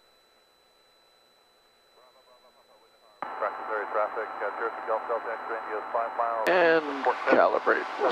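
Near silence for about three seconds, then voice audio cuts in suddenly over the cockpit intercom and radio, with a steady electrical hum beneath it. A click comes about six and a half seconds in, and the voice is louder after it.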